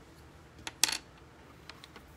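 A small hard object set down and handled on a tabletop: one click, then a short clatter of sharp clicks about a second in, and two faint clicks near the end.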